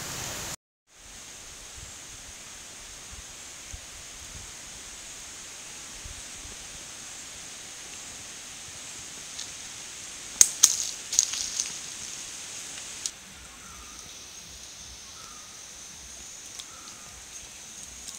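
Forest ambience: a steady high hiss, broken about ten seconds in by a short cluster of rustling crackles like dry leaves being disturbed, with a few faint short calls near the end.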